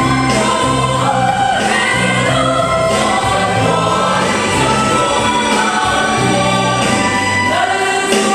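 Mixed church choir of women's and men's voices singing together in parts.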